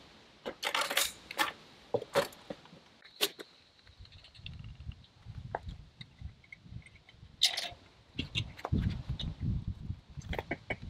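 Scattered metallic clicks and clacks as a folding step stool is opened and set down and a road bike's front wheel is removed, then low knocks and rustling as the bike is handled and lifted.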